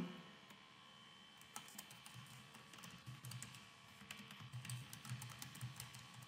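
Faint typing on a computer keyboard: a run of irregular key clicks that starts about a second and a half in.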